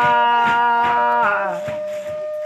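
Khắp, traditional Thái folk singing with accompaniment: a long held sung note that glides down and fades about one and a half seconds in, leaving a single steady held tone, with a few light clicks.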